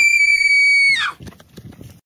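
A person screaming: one high-pitched scream held steady for about a second, then dropping off.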